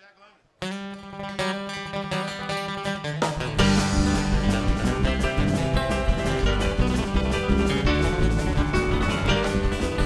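A live country-rock band starts a song. After a brief hush, an acoustic guitar strums alone over a held low note. About three seconds in, the bass, drums and the rest of the band come in together.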